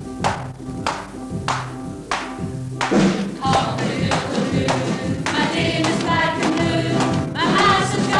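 Live stage-show music: struck percussion keeping a beat of about two strikes a second, then from about three seconds in the band fills out and a group of voices sings over it.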